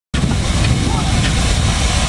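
Steam showman's engine running close by: a loud, steady low rumble with no distinct exhaust beats.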